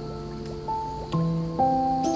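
Slow, gentle piano music, single notes and chords struck every half second or so and left to ring, with faint water drips mixed underneath.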